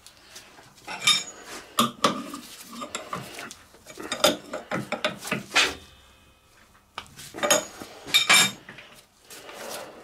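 Metal-on-metal clinks and clatter from handling a lathe's collet chuck and a C-spanner while a bronze bar is clamped in the collet. The clinks come in three short bursts, with quieter gaps between.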